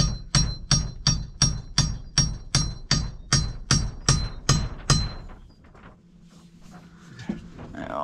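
Hammer blows on the wooden framing of a sauna interior: a steady run of about fourteen sharp, ringing strikes, about three a second, stopping about five seconds in.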